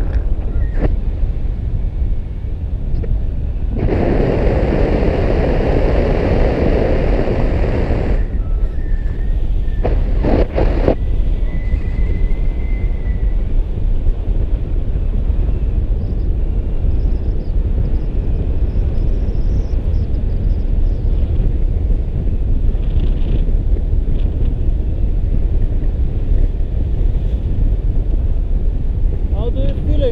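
Wind buffeting the microphone of a paraglider pilot's pole-mounted camera in flight: a steady low rumble, with a louder rush of wind from about four to eight seconds in and a couple of knocks a little after ten seconds.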